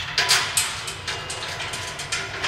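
Stainless steel guard plate being shifted and settled on top of an auger feeder's hopper: sheet metal sliding and knocking, a cluster of short scrapes and knocks in the first half second and another about a second in.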